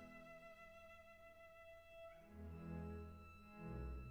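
Quiet orchestral string music: sustained violin and cello notes, the chord shifting about halfway through and the low strings swelling near the end.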